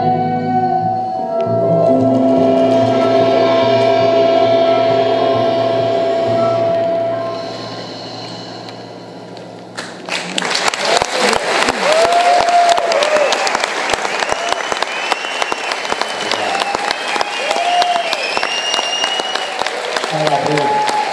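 An acoustic ensemble ends a song on a long held chord that slowly fades. About halfway through, the audience breaks into loud applause with cheers and whoops.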